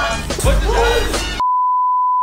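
Music with a vocal, cut off about a second and a half in by a single steady 1 kHz test-tone beep, the classic tone played with TV colour bars, which runs on alone.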